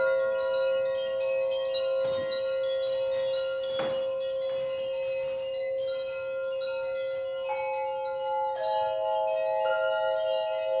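Tuned metal frequency tubes ringing in long, overlapping bell-like tones: one low note holds throughout while new, higher notes come in with sharp starts every second or so.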